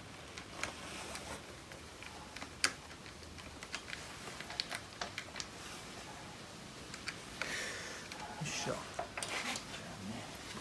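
Screwdriver working a motorcycle battery's terminal screw: scattered small metallic clicks and scrapes, with one sharper click a few seconds in.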